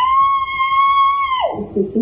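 A person screaming: one long, high-pitched scream that rises at the start, holds steady for about a second and a half, then drops away.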